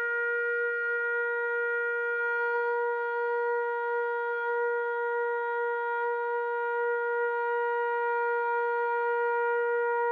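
Shofar (ram's horn) sounding one long, steady held note, a tekiah gedolah-style blast.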